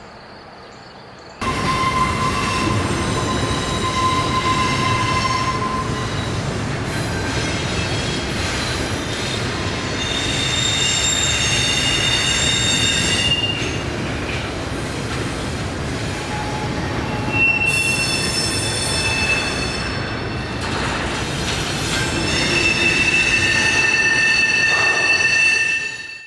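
Train wheels squealing on the rails over the rumble of a train rolling past. The sound starts suddenly about a second and a half in, after a faint outdoor hush. The squeal is several steady high tones that shift every few seconds.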